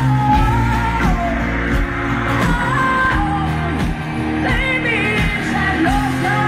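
Live pop-rock band playing, with drums and bass under a woman's sung vocal line of long, gliding held notes that carries no clear words.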